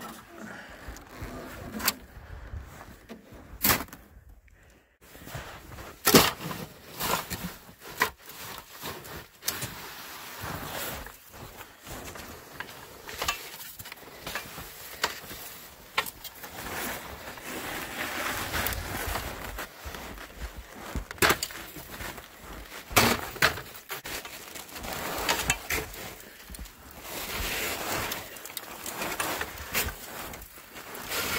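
Footsteps crunching in snow with irregular sharp knocks and scrapes as a person moves about and handles an aluminium ladder against a snow-covered roof edge.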